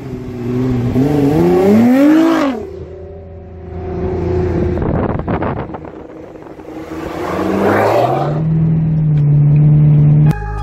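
A high-performance car engine accelerating hard. Its pitch climbs and then drops away about two and a half seconds in. After a quieter stretch it climbs again and settles into a loud, steady drone near the end.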